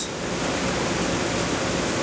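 Steady rushing air noise with a faint low hum, as from the grow room's air-moving fans.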